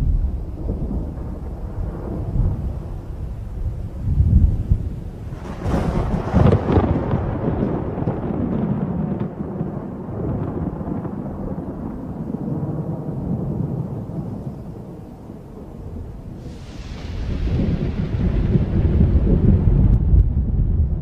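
Thunder: low rolling rumbles, with a sharp crack about six seconds in and a second crash near sixteen seconds, after which the rumbling swells louder.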